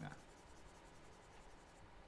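Faint scratching of a stylus moving over a drawing tablet, barely above near silence.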